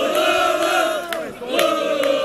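Football supporters chanting together in unison, with a short dip just past the middle. Two sharp hits keep time in the second half.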